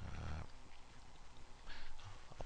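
A brief, faint low rumble at the start, then a short intake of breath near the end.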